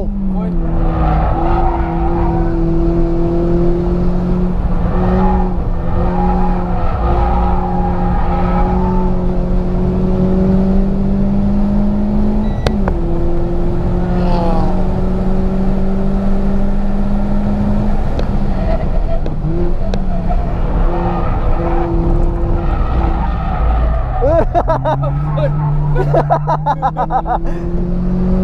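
Renault Sandero RS's 2.0-litre four-cylinder engine heard from inside the cabin, pulling hard on track. Its note climbs slowly through each gear and drops at three gear changes, about half a second in, about 18 seconds in and about 25 seconds in, over a steady rumble of road noise.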